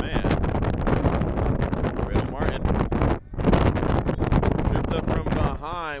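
Wind buffeting an outdoor microphone under a jumble of shouting voices, with one long wavering yell near the end.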